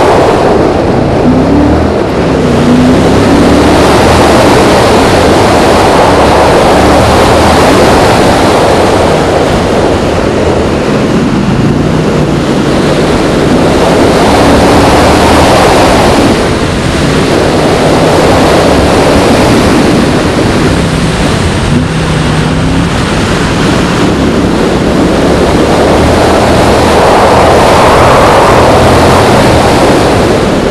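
Car engine driven hard through an autocross cone course, rising and falling in pitch as it accelerates and slows between cones, under heavy wind and road noise on the camera's microphone.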